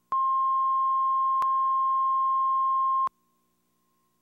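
Videotape line-up tone under a programme slate: a single steady beep-like pitch lasting about three seconds, starting and stopping abruptly, with one faint click near the middle.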